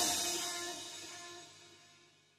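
The final notes of a French pop song ringing out after the music stops, a held chord fading away smoothly to silence about a second and a half in.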